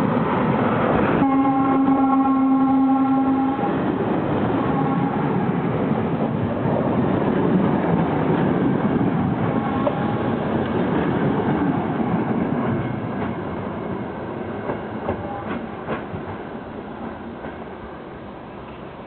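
ČD class 854 diesel railcar hauling a passenger train past: its horn sounds one steady chord for about two seconds, a second in, then the running noise of the railcar and coaches rolling by on the rails. The noise fades as the train moves away toward the station.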